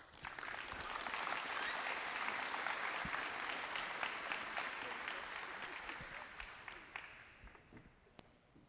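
Audience applauding, starting at once, holding steady, then thinning out and dying away near the end.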